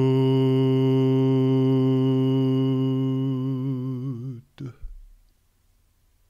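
A man's voice intoning the Hebrew letter Yud as one long, steady, low held note, as in mantra chanting. The pitch wavers near the end and the note stops about four and a half seconds in, followed by a brief breathy sound.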